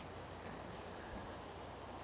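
Faint, steady wash of choppy sea water with light wind.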